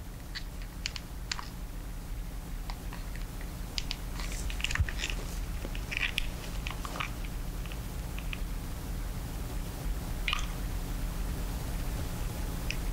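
A hot glue gun being squeezed to lay a bead of glue on canvas: scattered small clicks and crackles from the trigger and the gun's nozzle against the surface, thickest in the middle. A steady low hum lies under it.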